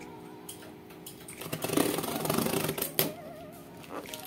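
Scissors cutting through packing tape and cardboard on a taped parcel box: a rasping burst lasting about a second midway, then a sharp click, over steady background music.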